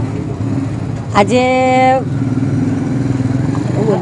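A motor vehicle engine running steadily close by, with one loud, flat-pitched horn blast lasting under a second about a second in.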